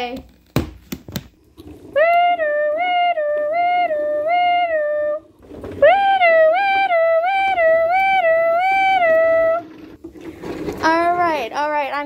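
A child's voice imitating an ambulance siren: a two-note wail going up and down between a high and a low note, in two runs of about three and a half seconds each. A few short knocks come just before the first run.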